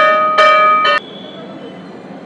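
Temple bell rung with three loud strikes about half a second apart, each ringing with clear steady tones; the ringing cuts off abruptly about a second in.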